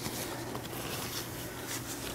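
Faint rustling of cloth surgical drapes handled with gloved hands, over a low steady hum.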